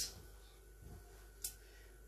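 Quiet room tone in a small room, broken by a single faint click about one and a half seconds in.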